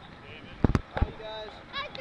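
High-pitched children's voices calling out, broken about halfway through by a quick run of sharp low thumps, the loudest sounds here.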